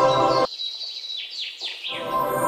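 Intro music that cuts out about half a second in, leaving a few quick, high, falling bird chirps, before the music comes back just at the end.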